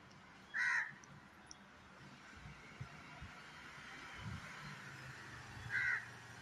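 Crow cawing twice: two short calls about five seconds apart.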